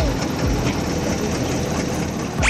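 A motor tour boat's engine running steadily as the boat moves along the river.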